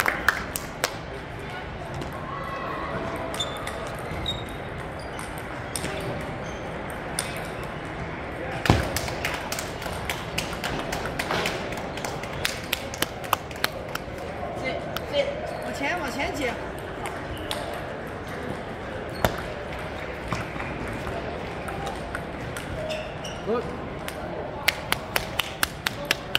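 Celluloid-style table tennis balls clicking sharply off paddles and tables, in quick runs near the start, in the middle and near the end, with more rallies from other tables over a steady hum of indistinct voices in a large echoing hall.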